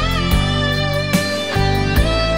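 Instrumental break in a 1990 Cantopop ballad: a lead guitar line bending a note at the start, over sustained band backing and regular drum hits.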